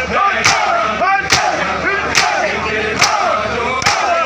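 A crowd of men beating their chests in unison in Shia matam: five sharp hand-on-chest slaps come a little under a second apart. Between the slaps, many male voices chant together.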